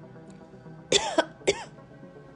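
A woman coughing twice, two short coughs about half a second apart, about a second in, over faint background music.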